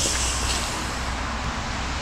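Steady wash of road-traffic noise with a low rumble underneath and a little extra hiss at the start. No motorcycle engine is running.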